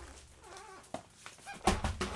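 Vinyl records and their sleeves being handled and set down, with a sharp thud about three-quarters of the way through. A faint low vocal murmur comes before it.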